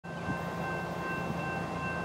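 Distant, unseen freight train approaching: a low rumble under a few steady high tones.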